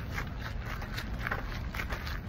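Outdoor background noise picked up by a phone while walking: a steady low rumble, as of wind on the microphone, with faint scattered footstep clicks.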